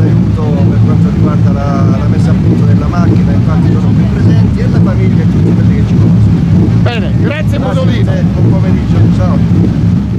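A man talking over the steady low hum of a car engine running.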